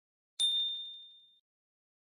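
Notification-bell 'ding' sound effect from a subscribe-button animation, played as the bell icon is clicked: a single high ding about half a second in, ringing out over about a second.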